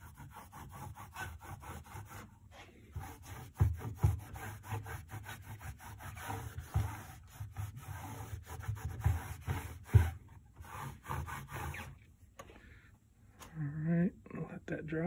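A shop rag dampened with rubbing alcohol is scrubbed quickly back and forth over a textured plastic C7 Corvette engine cover on a wooden workbench, cleaning the surface before painting. It makes a rapid scratchy rubbing with a few louder knocks, and the wiping stops about two seconds before the end.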